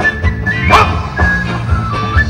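Live rock band playing: guitars over a steady bass-and-drum beat, with a high held melody line and one brief upward slide near the start.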